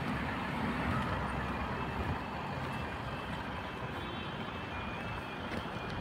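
Railway level crossing warning alarm sounding as the half-barriers lower, a high electronic beeping that alternates between two pitches and becomes clear about halfway through, over steady road and wind noise.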